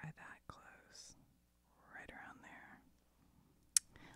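A woman's soft-spoken voice, low and breathy, with small handling clicks and one sharp click near the end.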